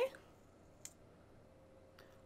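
Near silence with one short, faint click a little under a second in, from a mascara wand and tube being handled.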